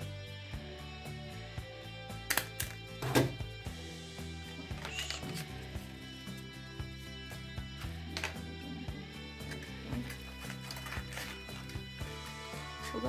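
Instrumental background music, with a few sharp clicks about two to three seconds in from a handheld stapler being squeezed shut to staple folded paper strips together.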